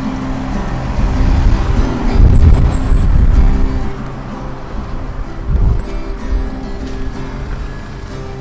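Acoustic guitar strummed steadily in chords, with no singing. A road vehicle passes loudly, its low rumble swelling about one to four seconds in and again briefly near the middle.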